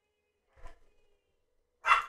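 A person's short, sharp breath, like a sigh, near the end, after near quiet broken only by a faint brief rustle about half a second in.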